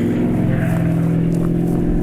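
Airplane flying low, straight toward the listener, its engine droning loud and steady.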